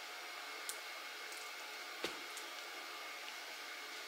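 Steady low hiss of room tone, with two faint clicks, about two-thirds of a second and two seconds in, as gloved hands handle a swollen lithium iron phosphate cell pack and set it down.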